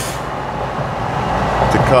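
Steady road and wind noise inside a moving car's cabin, with a man's voice starting to speak near the end.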